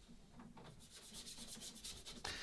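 Faint scrubbing of a small bristle brush on wooden canoe planking, in quick repeated strokes that begin about half a second in, as thinned varnish is scumbled into cracks in the old finish.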